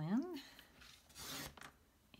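Stampin' Up! paper trimmer's blade carriage slid along its rail, slicing through a sheet of foil cardstock in one short stroke about a second in.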